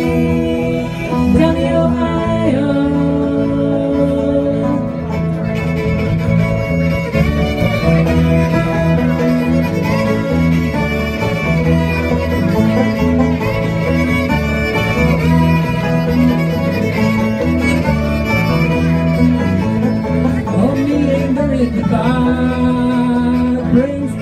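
Bluegrass-style string band playing an instrumental passage with no singing: fiddle, banjo, acoustic guitar and electric bass, with a steady bass line underneath.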